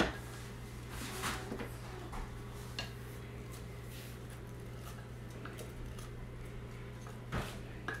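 A wooden salad fork stirring sliced cucumbers in a glass bowl, with a few sharp knocks and clinks against the glass. The loudest comes right at the start and another near the end.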